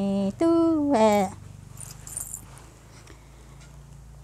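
A woman singing unaccompanied in Hmong, holding stepped notes and ending the phrase with a downward slide about a second in, followed by a pause with faint background sounds.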